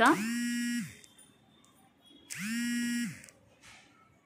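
A woman's voice holding a long, level hum twice, each just under a second, about two seconds apart.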